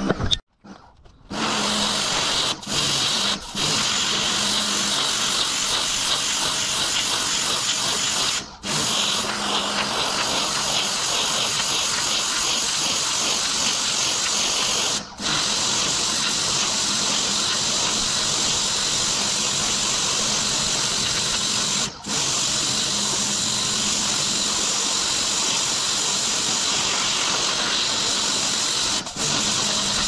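Pressure washer jet blasting onto concrete paving slabs: a steady, loud hiss of spray that starts about a second in, with a few brief breaks.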